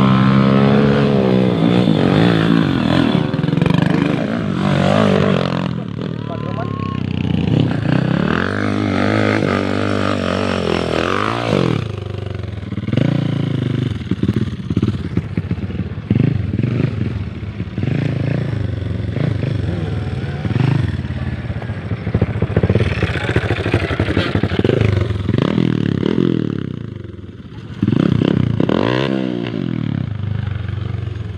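Trail motorcycles revving as they climb a steep dirt hill, the engine pitch rising and falling again and again as the riders work the throttle.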